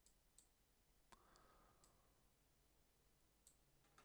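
Near silence broken by about five faint computer mouse clicks.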